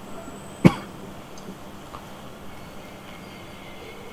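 A single short cough close to a microphone, about half a second in, over quiet room tone.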